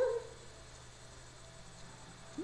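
A newborn baby's brief rising coo at the very start, then faint room tone.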